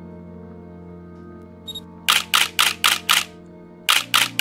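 A sustained synth chord with a rapid run of camera shutter clicks, like a camera firing a burst, starting about halfway through at about four clicks a second.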